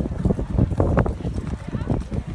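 Holstein show jumper cantering on sand arena footing close by: a run of dull hoofbeat thuds.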